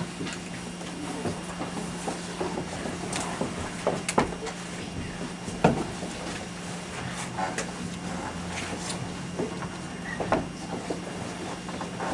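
Room sound of a waiting audience: a steady low hum under scattered knocks, clicks and shuffling, with no music.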